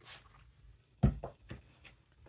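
Handling knocks on a sewing table: a sharp thump about a second in, then a few lighter knocks, as the plastic spray bottle is set down and the iron is taken up.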